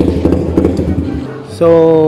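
Suzuki Raider Fi single-cylinder engine, bored to 177cc, running steadily through a full-titanium aftermarket exhaust, then cut off about a second in.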